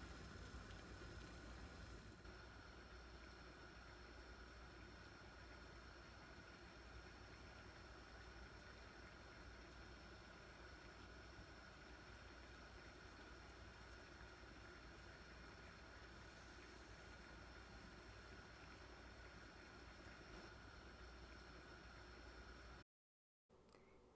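Near silence with a faint steady hiss from a pot of water at a steady boil on a lit gas burner.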